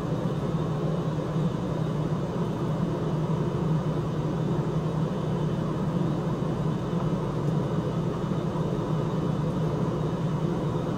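A steady low machine hum with an even hiss over it, unchanging in level and pitch throughout.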